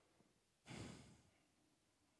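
A single short exhale into a close headset microphone, about two-thirds of a second in, with a low rush of breath on the mic; otherwise near silence.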